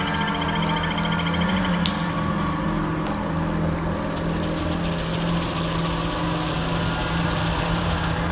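Ambient downtempo electronic music: a steady low drone pad under a dense wash of texture, with a few sharp clicks and a brief high trill in the first two seconds.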